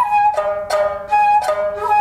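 Shamisen plucked in a steady rhythm of about three notes a second, with a shakuhachi bamboo flute holding sustained notes over it. A jiuta duet of honte shamisen and shakuhachi.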